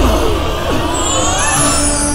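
Dramatic TV-serial background score and sound effects: a deep boom at the start, then swooping sweeps and a high falling sweep over a held low note.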